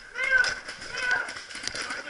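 Players' voices calling out across the field in two short bursts, with a few faint sharp clicks between them.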